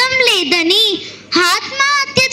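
A young girl's voice through a microphone in a melodic, sing-song delivery with drawn-out, gliding vowels, breaking off briefly about a second in before the next phrase.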